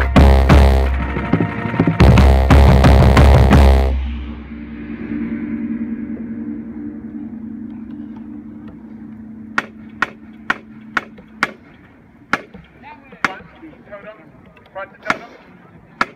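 Marching bass drums struck hard with mallets, a run of loud strokes from the tuned drums that stops about four seconds in. A low ringing tone then fades out, followed by scattered sharp clicks and a few faint voices.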